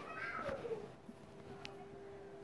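A faint drawn-out call that falls in pitch during the first second, over a faint steady hum.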